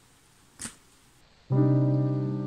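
After a short silence, a held keyboard chord starts about one and a half seconds in and slowly fades. It is a mock-mournful music sting edited in as a joke.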